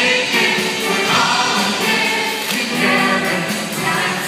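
A large chorus of men and women singing together in a pop show number over recorded music with a steady beat.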